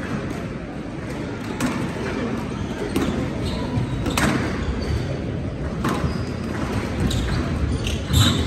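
Squash rally: the ball cracking off rackets and the court walls about every one to one and a half seconds, ringing in a large hall.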